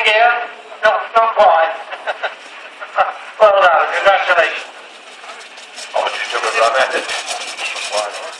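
Speech: a man's voice talking in short stretches, the words not made out, with quieter gaps between them.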